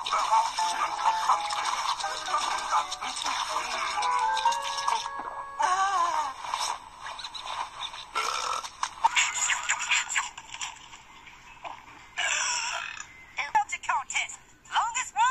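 Cartoon soundtrack played through a television: background music and character voices, with a cartoon animal's messy eating sound effects and a burp.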